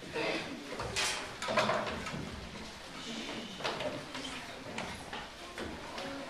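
Footsteps, shuffling and scattered knocks as a group of children moves about, with brief murmured voices among them.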